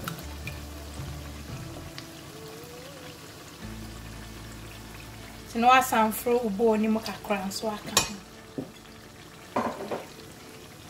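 Onions frying in oil, sizzling steadily as chopped tinned tomatoes are scraped into the pot with a spatula. A short stretch of voice comes in about five and a half seconds in, and there is a sharp knock near eight seconds.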